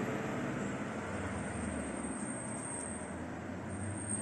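Steady background hiss and hum, room tone with no distinct event; any snips of the cuticle nippers are too faint to stand out.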